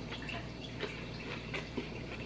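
Faint, wet mouth clicks of someone chewing a mouthful of instant noodles, over a low steady room hum.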